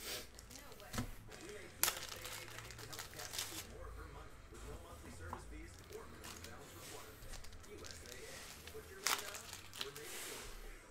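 Trading-card pack wrappers (2019 Panini Rookies & Stars Football) being torn open and crinkled. There are sharp rips about one and two seconds in and again near the end, with crinkling and card handling between.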